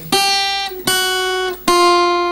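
Steel-string acoustic guitar playing three slow, evenly spaced single picked notes on the high E string, each ringing until the next and each a semitone lower: a chromatic scale descending, fingers lifted off one by one.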